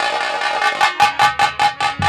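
Live nautanki stage music: a harmonium holding a chord under fast, even drum strokes, about six a second.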